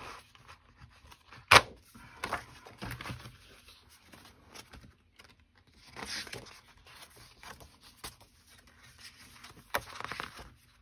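Patterned paper and cardstock being handled and slid across a cutting mat, with light rustles. There is one sharp knock about one and a half seconds in, and a louder rustle of a paper sheet near the middle.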